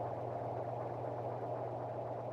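Steady low hum with a faint even hiss, without change: background noise of the recording in a pause between voices.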